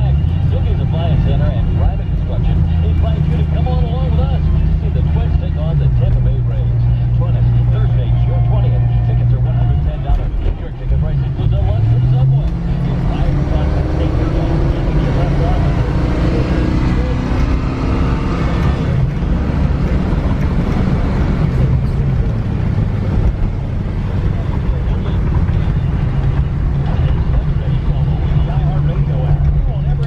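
The V8 of a 1978 Mercury Cougar heard from inside the cabin, pulling the car hard through its automatic gear changes toward 60 mph. The engine note steps between pitches, dips briefly about ten seconds in and then climbs, while road and wind noise rise.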